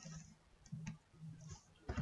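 A few faint computer keyboard keystrokes, the clearest one near the end.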